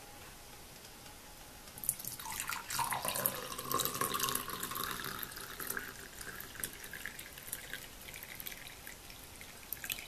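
Milk poured from an enamel saucepan into a glass tumbler: the stream starts about two seconds in, and its pitch rises as the glass fills. The pouring is loudest early on and thins to a trickle near the end.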